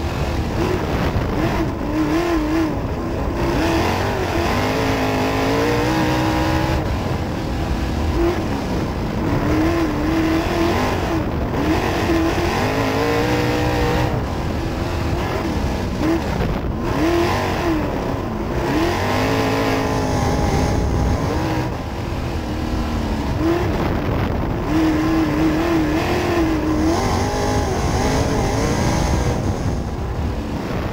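Outlaw sprint car engine heard from inside the open cockpit at racing speed on a dirt oval, its pitch rising and falling over and over as the car accelerates and lifts through the laps, with heavy wind and road noise underneath.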